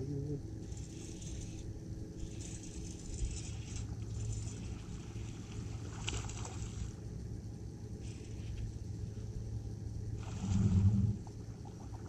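Steady low hum of a bass boat's bow-mounted trolling motor under water and wind noise, with short bursts of hiss about once a second while a hooked bass is played at the surface. A brief louder low sound comes near the end.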